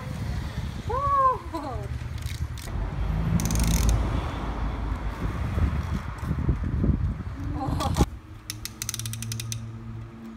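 A Wet Head game helmet's spinner dial being turned, clicking rapidly as it ratchets, starting after a sharp knock about eight seconds in. Before that, low rumbling noise.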